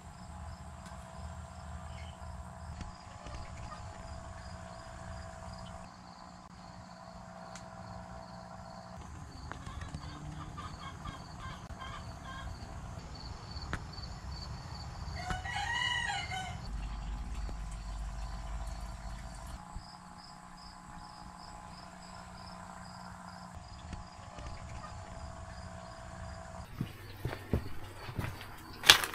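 A rooster crows once about halfway through, one pitched call rising and falling for a second or so. Under it runs a faint steady hum with faint, regular insect chirping.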